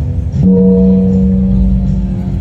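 A large hanging gong struck once about half a second in, ringing on as a steady low hum that slowly dies away, over background music.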